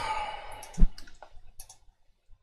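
Computer mouse clicking several times in quick succession, with one sharper, heavier knock a little under a second in.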